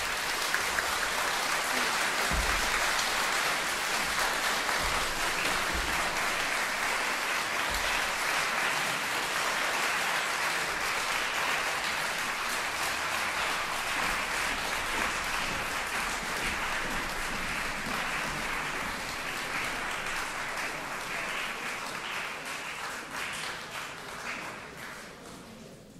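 Audience applauding steadily, tapering off a little near the end.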